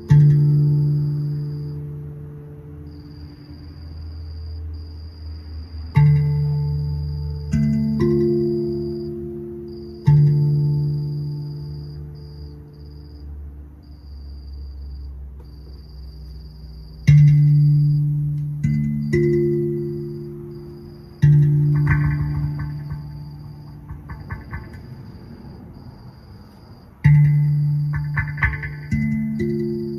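Rav Vast steel tongue drum played by hand. Single notes and short groups of two or three are struck a few seconds apart, each ringing out and slowly fading.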